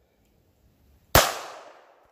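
A single .32 ACP pistol shot about a second in, firing an armour-piercing round clocked at 977 feet per second. It is a sharp crack with a tail of echo that fades over most of a second.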